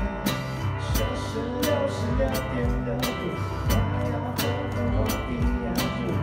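Band music: a cajon struck by hand in a steady beat, about three hits a second, over guitar and bass.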